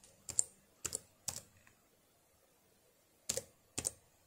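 Computer keyboard keys pressed one at a time: five separate keystrokes, three in the first second and a half, then a pause, then two more near the end.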